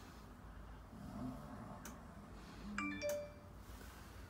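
A short electronic chime about three seconds in, with a faint click shortly before it.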